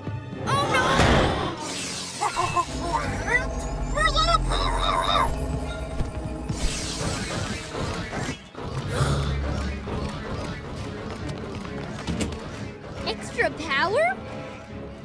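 Animated cartoon soundtrack: background music with crashing, smashing sound effects, short vocal cries from the characters, and a long rising tone in the middle.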